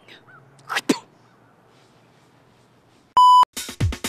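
A short, loud electronic beep at one steady pitch, lasting about a third of a second, about three seconds in. Electronic music with a regular beat starts right after it, just before the end.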